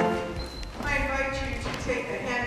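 A sustained church organ chord stops suddenly right at the start. It is followed by a few light knocks and a person's voice speaking in a reverberant church hall.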